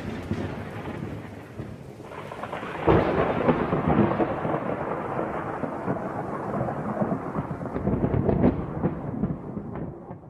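Rolling thunder over rain: a rumble dies away, swells again with a second roll of thunder about three seconds in, then fades out near the end.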